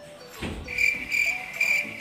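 An insect trilling: a high, steady buzz that pulses a few times a second, starting about half a second in.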